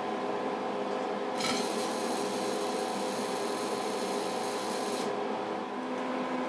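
Distilled water streaming from a bottle-top volumetric dispenser into a glass test tube of ground wheat, a steady hiss that starts suddenly about a second and a half in and stops about a second before the end, over a steady room hum.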